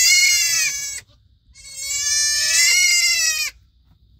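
A young goat kid bleating: two long, high-pitched bleats, the second a little longer and rising slightly in pitch.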